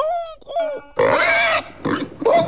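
A man's voice making wordless vocal sounds: short gliding noises, then about a second in a louder, longer, rough sound like a grunt.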